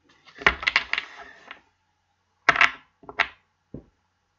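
A tarot deck being handled and shuffled: a quick run of card slaps and clicks about half a second in, then a few single sharp clicks.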